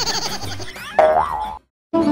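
Cartoon-style comic sound effects for a title-card transition: a wobbling, pitch-bending sound, then a springy boing about a second in that cuts off suddenly.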